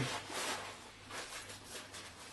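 Rustling and shuffling of lightweight fabric hiking gear and stuff sacks being handled while a backpack is packed, in a few short bursts.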